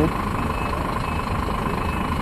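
Semi-truck's diesel engine running steadily at low revs while the rig reverses slowly, heard from inside the cab.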